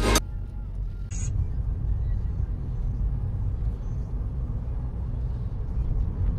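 Steady low rumble of a car's engine and tyres heard from inside the cabin while driving at town speed, after music cuts off right at the start. A brief hiss comes about a second in.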